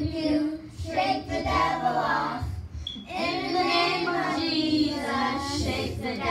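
Children's choir of young girls singing together, in two sung phrases with a short pause about two and a half seconds in.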